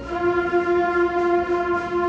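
Middle school concert band of brass and woodwinds holding one long, steady note.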